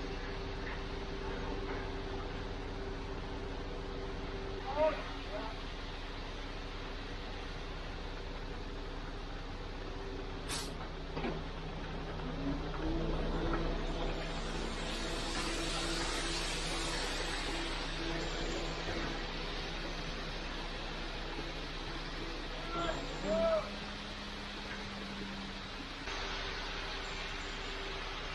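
Engine of the concrete placing truck running steadily, its pitch shifting about halfway through as concrete is discharged from the boom, with a hissing rush for several seconds in the middle. A couple of brief short calls are heard around a quarter and four fifths of the way in.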